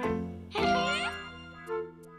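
A bright chime sound effect with a shimmering, sweeping sparkle starts suddenly about half a second in and rings out, laid over background music.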